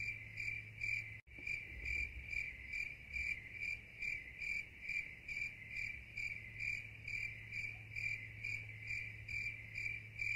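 A chirping insect calls in an even rhythm, a high pitched chirp about three times a second, over a steady low hum.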